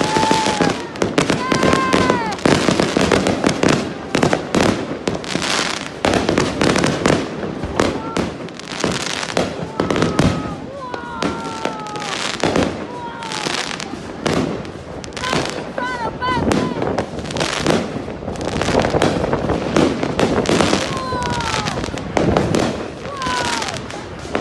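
Aerial fireworks going off in a dense, continuous run of bangs and crackles, with people's voices calling out over them.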